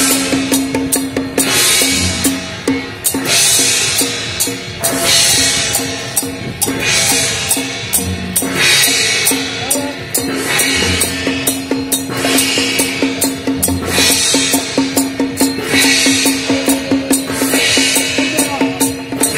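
Traditional temple-procession percussion: drums beating a fast, steady rhythm with a cymbal crash about every second and a half to two seconds, over a held pitched note.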